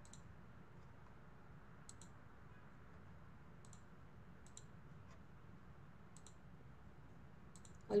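A handful of faint, sharp computer mouse clicks, one every second or two, while a ladder-logic rung is added in PLC programming software.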